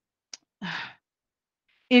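A woman's short sigh in a pause mid-sentence, preceded by a small mouth click.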